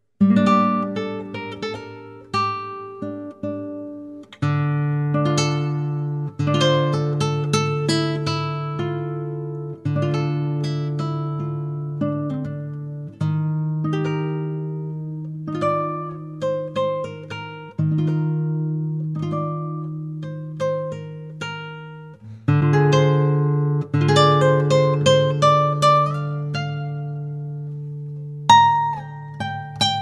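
Nylon-string classical guitar fingerpicked: a flowing melody of quick plucked notes over low bass notes held beneath, with the notes ringing and decaying.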